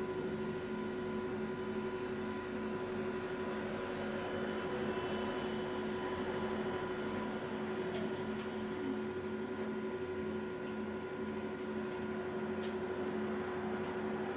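Steady hum inside a double-decker bus's upper deck, its engine and on-board machinery running evenly with constant tones and no rise in pitch, with a few faint clicks.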